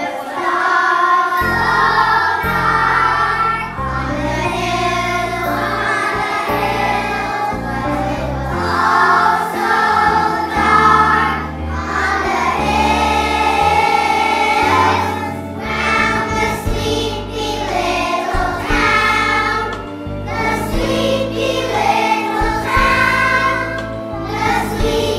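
Children's choir singing together over instrumental accompaniment, whose low sustained notes come in about a second and a half in.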